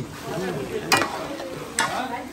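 Food frying in oil in a pot, with a steady sizzle. Two sharp clicks stand out, about a second in and near the end.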